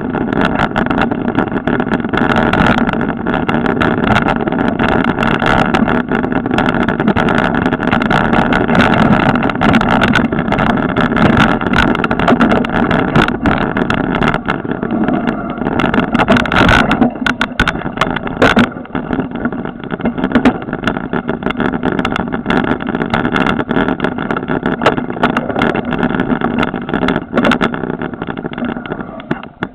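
Mountain bike riding fast over a bumpy dirt forest trail, recorded from the bike: a steady rumble of tyres and wind with frequent rattles and knocks from the rough ground. It gets quieter near the end as the bike slows to a stop.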